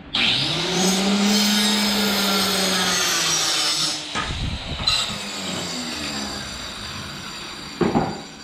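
Handheld circular saw starting up and cutting across treated pine tongue-and-groove boards, its motor tone sagging slightly under load through a loud cut of about four seconds. It then runs on more quietly until a sharp wooden knock near the end.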